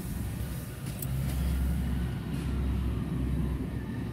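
A low, steady engine rumble, with a short sharp click about a second in.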